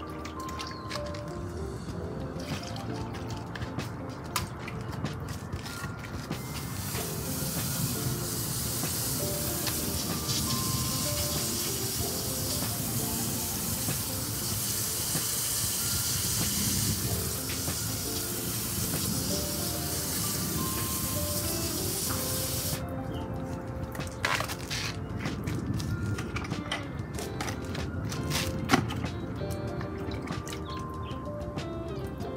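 Background music with a steady beat throughout. A garden hose watering wand sprays water in a steady hiss from about six seconds in, cutting off sharply about seven seconds before the end, followed by a few light knocks.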